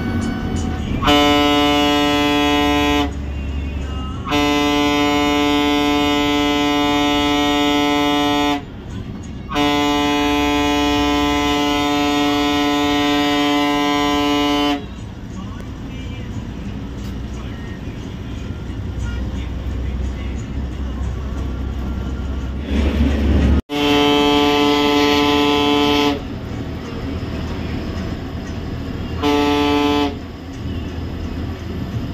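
Air horn sounding in long, steady blasts of one unchanging pitch, heard from inside the bus cabin: a blast of about two seconds, two long ones of four to five seconds, a pause, then another two-second blast and a short one at the very end. The bus's diesel engine runs underneath.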